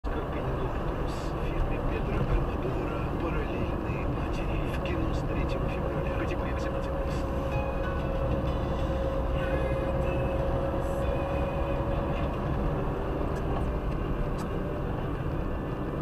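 Steady road and engine rumble heard from inside a moving car's cabin, with a faint steady hum through the middle.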